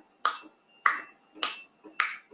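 Sharp clicks in an even beat, a little under two a second, ticking off a thinking countdown, with a faint steady high tone behind them.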